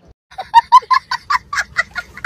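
A young child laughing hard: a rapid string of short, high-pitched 'ha' sounds, about six a second, starting about half a second in.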